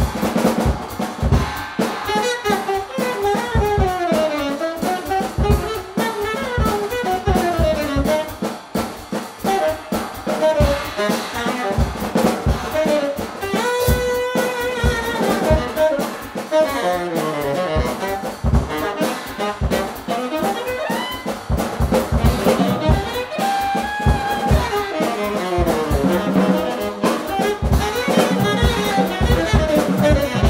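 Tenor saxophone improvising winding, fast-moving jazz lines over a drum kit played freely with cymbals and drum hits. About halfway through the saxophone briefly holds one note before going back to running lines.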